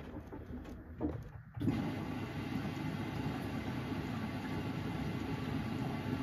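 Samsung front-loading washing machine running mid-cycle: wet laundry tumbling and sloshing in the drum, then, about a second and a half in, a steady, even running sound from the machine sets in and holds.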